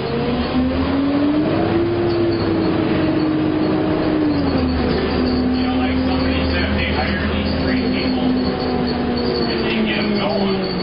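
City bus engine and drivetrain running under way with a steady low rumble and a whine that rises in pitch for about two seconds as the bus speeds up, holds, drops a step about four and a half seconds in, then slowly falls near the end.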